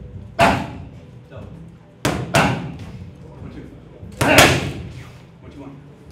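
Boxing gloves hitting red leather focus mitts in combinations: a single punch about half a second in, then a quick double about two seconds in and another double about four seconds in, each a sharp smack.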